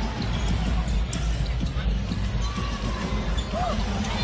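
Steady arena crowd noise during live basketball play, with a basketball bouncing on the hardwood court.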